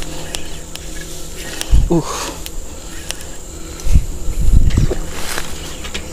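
Dull low thumps and knocks of handling close to the microphone as a small landed snakehead is grabbed and held, loudest in a cluster about four to five seconds in, with a man's short grunt about two seconds in.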